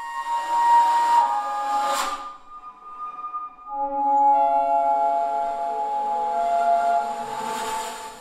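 Bass flute played with heavy breath noise: a breathy phrase of held notes ending in a sharp accented attack about two seconds in, then after a short lull a second phrase of sustained notes with several pitches sounding together.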